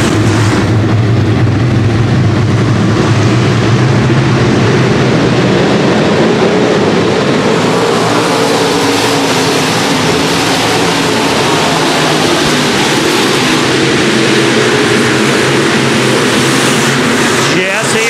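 A pack of V8 dirt-track stock cars racing at full throttle at the start of a race: a loud, steady wall of engine noise from many cars at once.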